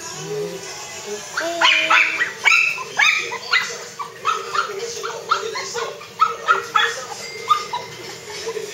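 Pomeranian dog barking and yipping in a quick run of short, high calls, about two or three a second, starting about a second and a half in and stopping near the end.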